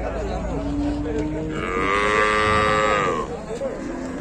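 A cow mooing once: one long call of nearly three seconds that swells and rises in pitch about a second in, then drops away near the end.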